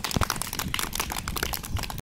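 A group of children applauding: many quick, irregular hand claps.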